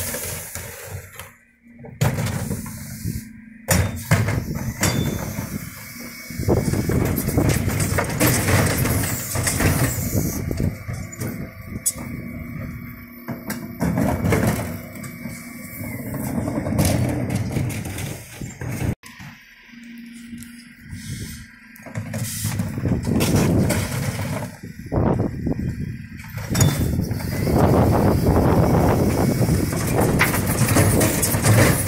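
Dennis Eagle bin lorry running at the kerb with its hydraulics working, a steady hum with a held whine, while Terberg split lifters load and raise wheelie bins. Plastic bins and their wheels knock and clatter repeatedly against the lifters and paving.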